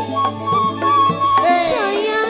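Live campursari music: a female sinden singing into a microphone over keyboard and drum accompaniment. A note is held steady for most of the first second and a half, and the low bass drops out near the end.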